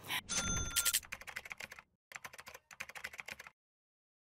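Edited-in transition sound effect: a short chime with a low thump, followed by a rapid run of typing-like clicks with one short break, cutting off suddenly about three and a half seconds in.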